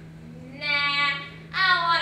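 A young female voice singing two drawn-out high notes, the first about half a second in and the second near the end, each held for about half a second.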